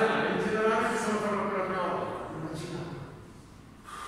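A man talking for the first two seconds or so, then a quieter pause near the end.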